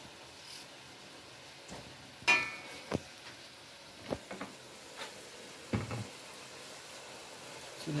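Meat curry sizzling faintly in a stainless steel pot on a gas stove, with several sharp knocks and clinks against the pot as peeled potatoes are put in.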